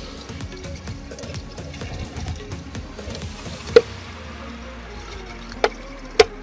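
Water poured from a plastic bottle into a cut plastic bottle set in the soil, filling it to water the plant's roots, under background music. Sharp clicks about four seconds in and again near the end.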